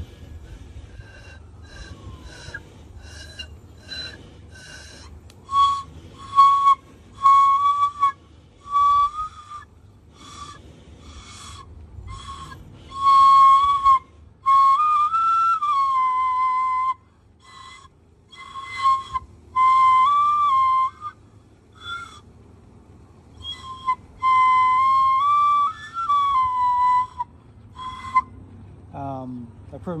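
Kōauau wheua, a small Māori bone flute carved from deer shin bone, being blown: a few faint, airy notes at first, then a string of short notes on much the same pitch. Several longer held notes, around the middle and again near the end, bend up in pitch and settle back down.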